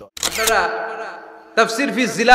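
A camera shutter click, used as a transition effect, just after the start, followed by a man's voice drawn out on one pitch and fading; a preacher's speech starts again near the end.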